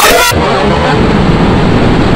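Loud, heavily distorted and clipped audio from an effects-processed cartoon soundtrack: a harsh full-range noise that turns muffled a moment in, leaving a dense rumbling distortion.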